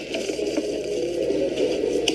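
Scissors cutting open a padded paper mailer, with scraping and crinkling of the paper.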